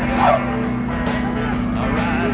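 A French bulldog gives a short yelp, falling in pitch, about a quarter second in, over background music with a steady low hum.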